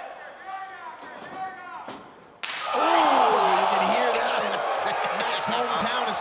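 A wrestler's strike lands with a sharp slap about two and a half seconds in, and a crowd in a hall erupts into loud cheering and shouting that carries on. Before the strike, scattered voices call out from the crowd.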